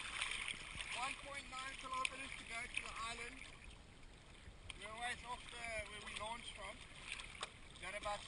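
Small choppy waves lapping and sloshing around a surfboard at the waterline, with a faint voice talking under it twice.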